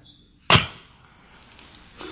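A single sudden whoosh about half a second in, loud at first and dying away within half a second, followed by faint room tone with a few light ticks.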